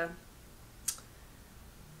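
A single short, sharp click about a second in, against quiet room tone.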